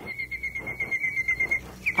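Recorded birdsong from an old radio advertisement played back: a rapid high trill of chirps on one pitch, about ten a second, breaking off near the end.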